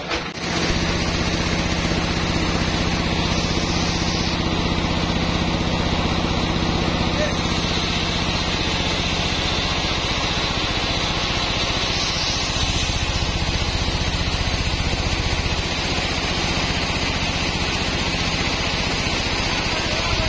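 Log band saw running steadily with a low motor hum as its blade cuts lengthwise through a teak log.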